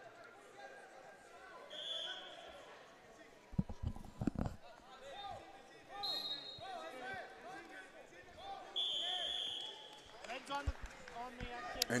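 Wrestling-hall ambience with faint background voices, a few dull thuds of bodies and feet on the wrestling mat about four seconds in, and a whistle blown briefly near two seconds and again for about a second near nine seconds, as the referee stops the action.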